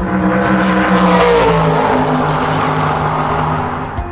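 Motor vehicle engine sound effect, running steadily with its pitch falling gradually over the first couple of seconds, then cutting off suddenly at the end.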